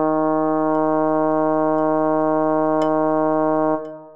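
A single low synthesizer note with a brass-like tone, held steadily and then fading away near the end. It sounds the Bass I line of a choral part-learning track, here the hummed "m" before "eleison".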